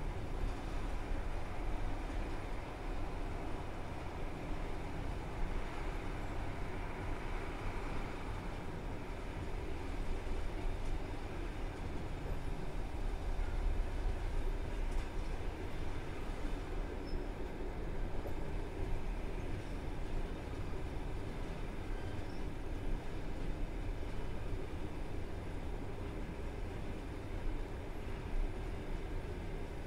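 Passenger coach rolling slowly through a station: steady running noise of wheels on the rails and the coach's running gear, heard from inside at the window.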